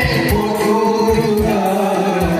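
A group of voices singing held notes over instrumental music with a steady low drum beat.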